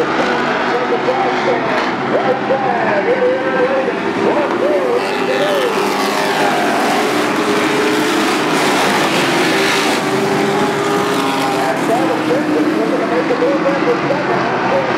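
Race trucks' engines running on a short oval, loudest about halfway through as a group passes close by, engine notes rising and falling. A voice, likely from the loudspeaker, talks over it.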